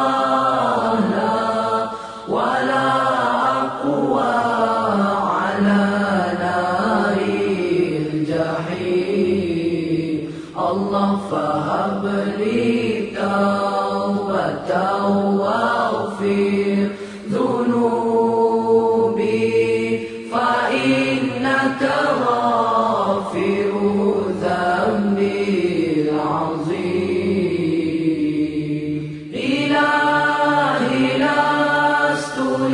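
Voices singing a slow Islamic devotional nasheed, a prayer for God's forgiveness, in long drawn-out melodic phrases with brief breaks between them.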